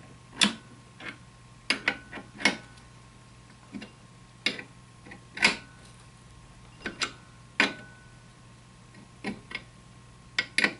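Steel open-end wrench clicking against the 4140 steel bayonet spikes as each spike is snugged down on its threads in turn: about a dozen irregular sharp metal clicks, a few with a brief ring.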